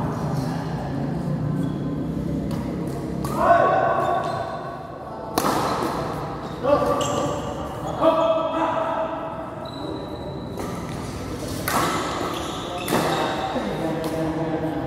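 Badminton rally: rackets strike the shuttlecock with sharp smacks, about half a dozen at uneven one- to four-second gaps, each echoing in a large hall. Players' voices and calls come in between the hits.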